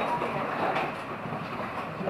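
Coaster ride car rolling along its rail track through a tunnel, a steady running noise.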